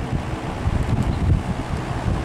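General Electric W-26 window box fan with a shaded-pole motor running steadily on medium speed, a rush of moving air with a low, uneven buffeting of the blown air on the microphone. The medium speed is running normally.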